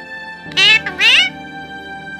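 An Alexandrine parakeet giving two loud calls about half a second apart, the first falling in pitch and the second rising, over steady background music.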